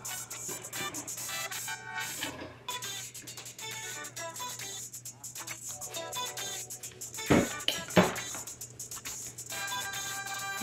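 Background music playing low, with two sharp knocks less than a second apart about seven seconds in: the blender jar and funnel being set down on the table.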